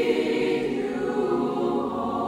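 Mixed choir singing long held notes, slowly getting quieter.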